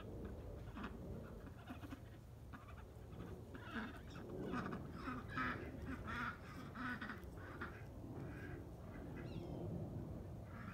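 Birds calling: a rapid series of short, quacking calls, thickest through the middle of the stretch, over a steady low rumble.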